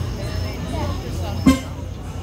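Indistinct voices talking over a steady low hum, with one sharp knock about one and a half seconds in.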